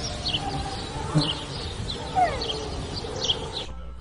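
Outdoor sound of birds chirping in short repeated calls over a low rumble and rustle of wind and handling on the microphone, with a couple of brief thumps. It cuts off abruptly near the end.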